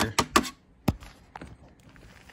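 Three sharp taps and knocks in the first second, then a few faint ticks: a hand patting the plastic plate that covers the heater in the floor of a wooden incubator box, and the box being handled.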